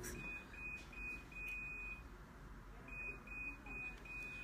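Faint high-pitched electronic beeping: short, even beeps about two or three a second in two runs, with a short pause about two seconds in.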